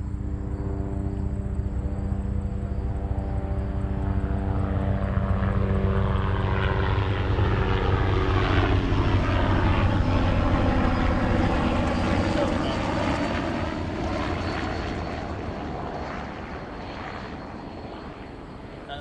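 Helicopter flying low overhead. The rotor and engine sound grows louder to a peak about halfway through, then fades as it moves away.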